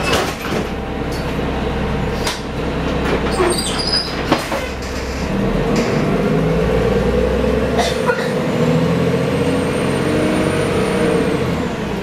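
Interior sound of a 1990 Gillig Phantom transit bus with a Cummins L-10 inline-six diesel: the engine running under way, with knocks and rattles from the body and fittings. About halfway through the engine note strengthens and climbs. A faint high whine rises and falls near the end.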